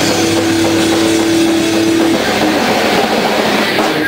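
Heavy rock band playing live: distorted guitars and drums, heavily overloaded on the recording into one dense wall of sound. A held guitar note rings through the first two seconds, then stops.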